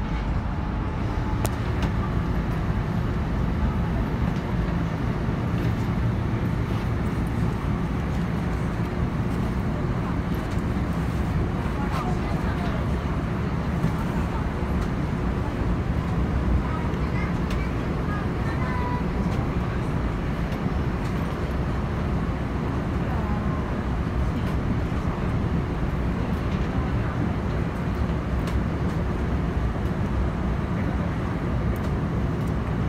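Steady rumble and running noise of a subway train travelling at speed, heard from inside the carriage, with faint voices in the middle of the stretch.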